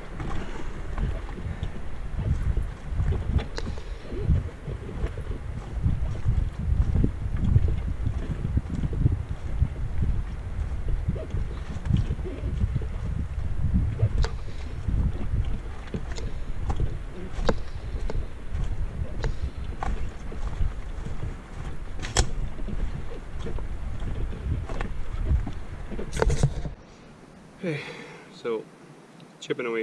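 Walking a portage trail with a canoe carried overhead: an uneven low rumble of footfalls and body movement against the camera, with a few sharp knocks from the canoe and its yoke. The rumble stops shortly before the end.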